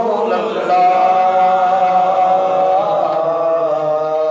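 A man's unaccompanied voice reciting a naat, a devotional chant, in long held notes that waver and step slowly between pitches.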